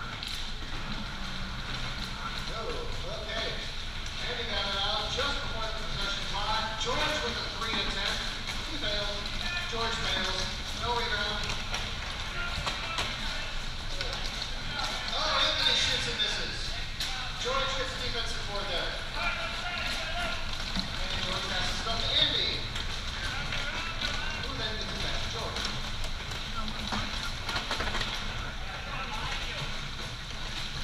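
Indistinct voices of several players calling out across the court, over a steady low background hum. There is a louder burst about halfway through and a brief sharp high sound about two-thirds through.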